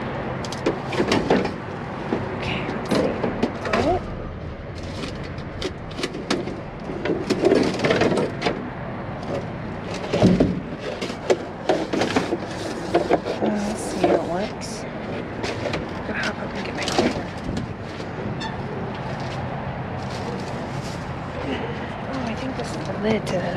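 Trash being rummaged through in a steel dumpster: plastic containers, cardboard and other items knocked and shifted, making scattered clatters and rustles over a steady low hum.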